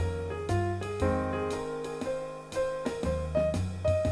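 Solo jazz piano in medium swing played on a digital stage piano: left-hand bass notes held under right-hand chords and melody, a new chord struck about every half second.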